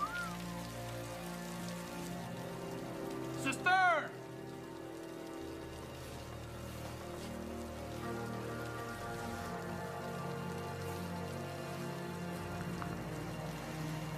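Steady rain falling on a roof under a low sustained film-score drone that swells from about halfway through. A short, loud, high-pitched cry with a wavering, falling pitch comes about three and a half seconds in.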